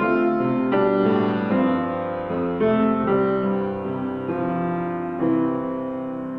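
Grand piano played slowly: sustained chords struck about once a second, each ringing on into the next.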